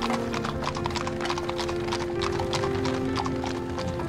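Horse's hooves clip-clopping in a steady run as it pulls a carriage.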